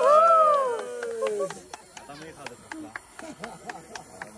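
People whooping and cheering as a bottle of sparkling wine is sprayed, long rising-and-falling whoops that fade out after about a second and a half. After that, a run of small irregular clicks and taps.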